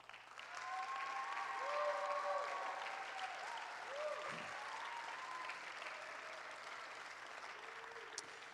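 Church congregation applauding, with a few voices calling out over the clapping. The applause swells over the first two seconds, then slowly dies away.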